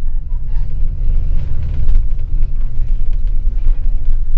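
Steady low rumble of a moving bus's engine and running gear, heard from inside the vehicle.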